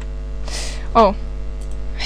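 Steady electrical mains hum on the recording, with a short breathy hiss about half a second in and a brief spoken "oh" about a second in.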